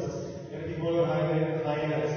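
A man's voice drawing out its syllables on fairly steady, held pitches, between speech and chant.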